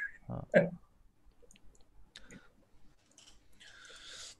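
A short spoken word, then a few faint, scattered clicks and a soft hiss near the end.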